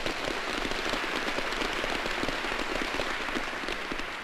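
Audience applauding, a dense steady patter of many hands, dying away near the end.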